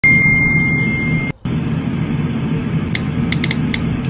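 A steady low rumble, with a high steady tone over it for about the first second, then a quick run of light taps near the end that fit phone keyboard clicks.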